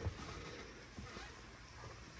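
Faint, steady background hiss with a soft click about a second in.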